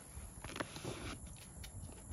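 Faint scattered taps and rustles as hands grip arrows stuck in a cardboard archery block target.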